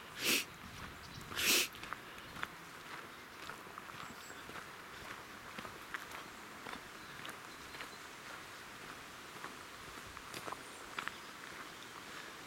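Two short breaths close to the microphone in the first two seconds, then faint irregular crunching footsteps on a gravel path.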